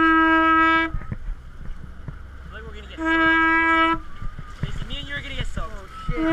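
A horn blown in two steady blasts of about a second each, about three seconds apart, each one held on a single note.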